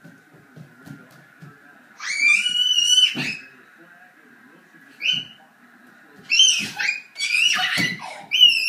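Young children squealing in play: one long high-pitched shriek about two seconds in, a short squeal near the middle, and a run of squeals near the end. Soft knocks of small feet on the hardwood floor come early on.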